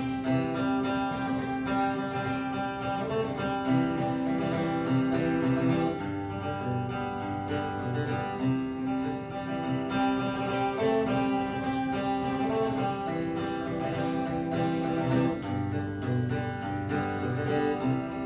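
Solo acoustic guitar strummed and picked in a steady rhythm: the instrumental introduction to a folk song.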